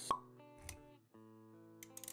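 Intro sound effects over quiet background music: one sharp pop a moment in, the loudest thing here, then held notes with a soft low thump just over half a second in and a few light clicks near the end.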